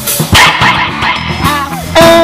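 Live band playing rock with electric guitar, drums and keyboard. Over it a voice gives several quick dog-like yips in the first second and a short rising-and-falling howl near the end, imitating a dog.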